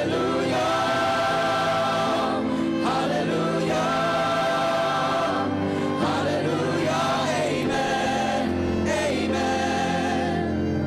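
Mixed choir singing a gospel song in long held chords, with a live ensemble of violins, acoustic guitar and keyboard accompanying.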